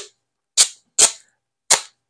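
Tape being pulled off the roll in short, sharp rips: four quick tearing sounds spaced about half a second apart.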